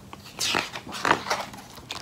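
A hand rubbing and turning the paper pages of a hardcover picture book: several short rustles of paper.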